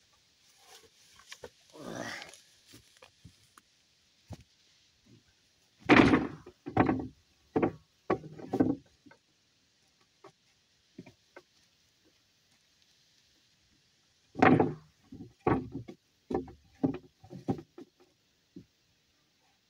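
Blows on wooden framing lumber in two runs of four or five heavy knocks, each about a second apart, like a hammer driving nails into a wooden frame. A short scraping sound comes about two seconds in.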